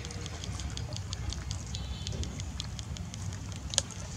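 Quick, irregular crackling clicks over a low rumble, with one sharper click near the end.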